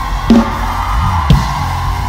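Live band music: a drum kit strikes a few hits over a steady low bass note and a held keyboard chord.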